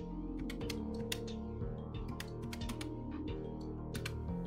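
Keys of a plastic desktop calculator with round keycaps being pressed in a quick, irregular run of clicks, as a subtraction is keyed in. Background music runs steadily underneath.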